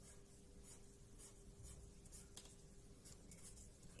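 Faint scratching of a pen on paper: a series of short, quick strokes as hatch lines are drawn.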